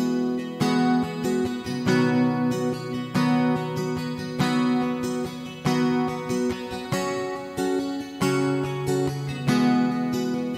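Acoustic guitar strumming chords with no singing, about one strum every second or so, each chord left to ring out before the next.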